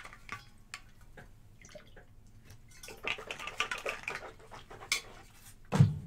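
Light clinks and knocks of a drinking vessel being handled, with a short stretch of water sound about three seconds in as the lecturer gets some water. A single dull thump near the end, like the vessel being set down.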